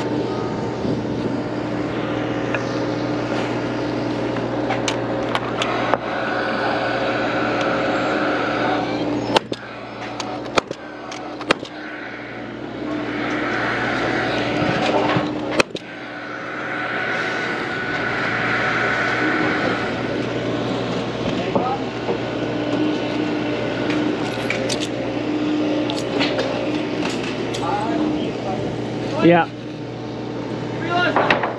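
A Paslode gas framing nailer driving nails into timber framing, several sharp single shots spaced a second or more apart, over a steady site hum.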